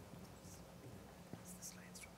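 Near silence: faint room tone with a low steady hum and a few brief, soft hissing sounds.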